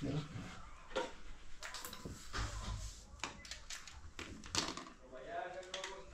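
Scattered light clicks and taps of a wall power outlet, its wires and small hand tools being handled, several separate clicks spaced irregularly over a few seconds, with a low murmur of voice near the end.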